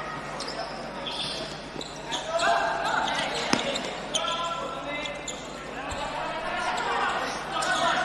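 Indoor futsal hall ambience: crowd voices and players' shouts echoing in the arena, with the ball being kicked and thudding on the court. One sharp knock stands out about three and a half seconds in.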